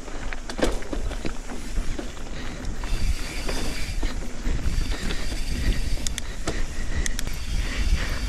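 Canyon Torque CF mountain bike riding fast down dirt singletrack: a steady rumble of wind buffeting the microphone and tyres rolling over dirt, with scattered sharp clicks and rattles from the bike over bumps.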